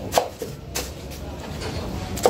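A black plastic flower pot holding artificial hydrangeas knocking onto a shelf as it is set down: one sharp knock right at the start, then a softer one a little more than half a second later.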